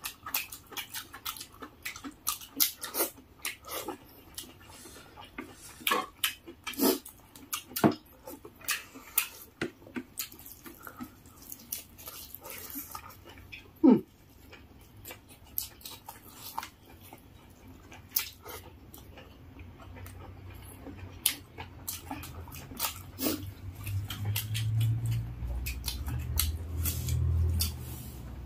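Close-miked eating sounds: lip smacks, chewing and wet squishes of rice and curry being mixed and eaten by hand, as a string of short, irregular clicks and smacks. A low rumble builds up near the end.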